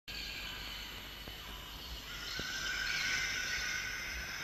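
Steady high-pitched drone of many held tones, thickening and growing a little louder about halfway through, with a couple of faint ticks.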